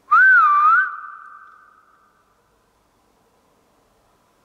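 A person whistling one short note that wavers up and down twice in under a second, its echo hanging on for about another second in a large hard-walled hall. It is a call for a reply to be copied.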